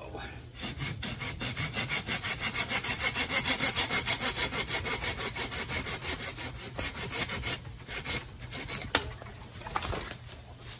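Curved hand pruning saw cutting through the base of a thick bamboo stalk in rapid, even strokes. The strokes die away about seven and a half seconds in, and a single sharp crack follows near the end.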